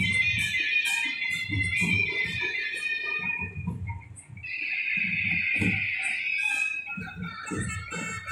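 Loud street procession music: a high, sustained melody line over a steady drumbeat with regular cymbal strokes. The music drops briefly about four seconds in.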